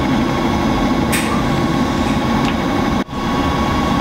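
Laboratory high-speed disperser running steadily, its motor humming with one steady tone as the stirring shaft mixes thickened latex paint in a stainless steel pot. The sound drops out briefly about three seconds in.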